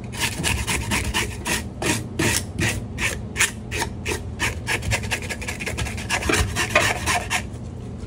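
Serrated fish scaler scraping the scales off a whole rosefish on a plastic cutting board, in rapid rasping strokes several times a second.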